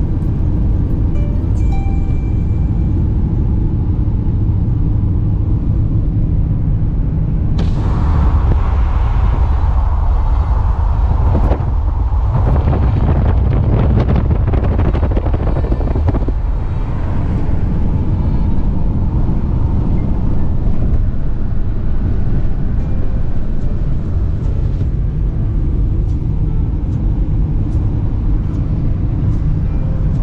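Steady low road rumble inside a Renault Captur's cabin at highway speed, under background music. A louder rushing hiss joins about eight seconds in and fades out by about seventeen seconds.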